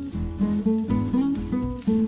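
Background music: an acoustic guitar playing a run of short plucked notes.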